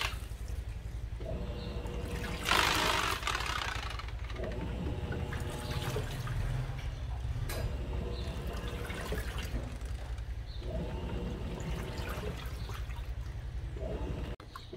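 Electrolux Turbo Economia 6 kg top-loading washing machine agitating its wash: the motor hums in runs of about two seconds as the agitator turns one way and then the other, with water sloshing in the tub. A brief, louder rush of water comes about two and a half seconds in.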